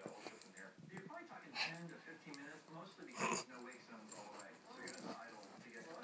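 Two small dogs play-wrestling, with dog sounds from their tussle, including two short louder ones about one and a half and three seconds in, over faint television voices.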